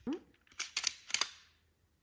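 Sharp plastic clicks of a sheep ear-tag applicator as a wheel of tags is loaded onto it: a quick run of clicks about half a second in and two more just after a second. A brief vocal sound comes right at the start.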